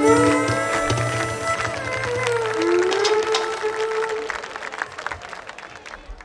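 Greek folk band with violin and laouto playing the closing held notes of a dance tune, the melody sliding into its final notes and stopping about four seconds in. Scattered clapping follows as the sound fades out.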